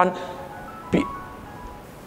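Electronic reminder chime playing a short melody of steady electronic tones, a timed alert signalling that the session's time is up.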